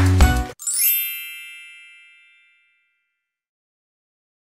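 A kids' show intro jingle with a heavy beat cuts off about half a second in, and a single bright chime rings out and fades away over about two seconds.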